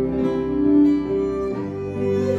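Live ensemble of violin, double bass, piano and acoustic guitar playing an Irish medley, the violin carrying a slow melody of long held notes over the accompaniment.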